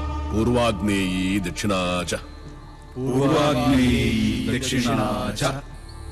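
Male voice chanting a Sanskrit mantra in two drawn-out phrases with a short pause between them, over low background film music.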